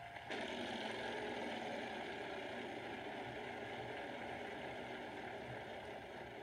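The Wheel of Fortune wheel spinning, its pointer clicking rapidly and continuously against the pegs, heard through a phone's small speaker. A held electronic tone cuts off just before the clicking starts. The spin ends on a losing wedge.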